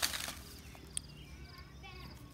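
A short scuffing rustle at the start, then a single light click about a second in, from PVC pipe fittings and tools being handled on the ground.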